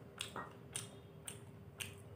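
Close-up chewing of chowmein noodles: a quick series of short, wet mouth smacks, about five or six in two seconds.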